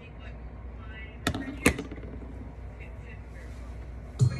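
Two sharp knocks close to the microphone, about a third of a second apart, a little over a second in, over a low steady hum.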